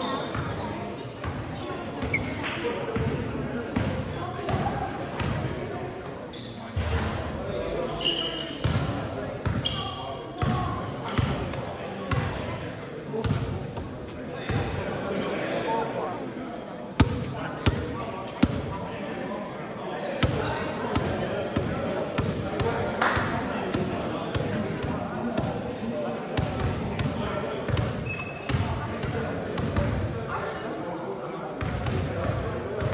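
Basketballs bouncing again and again on a sports hall's wooden court, echoing in the hall, under background voices, with one sharper bang about seventeen seconds in.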